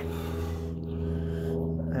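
A steady, low mechanical hum made of several even pitches, like a motor or engine running at a constant speed.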